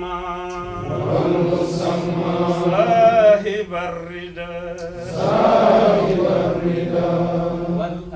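A man chanting Arabic devotional verses from a book in a melodic recitation with long held notes, pausing briefly about halfway through, over a steady low hum.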